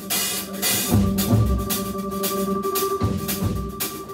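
Live jazz organ trio playing: a Hammond B3 organ holds sustained chords while the drum kit keeps time with repeated drum and cymbal strikes.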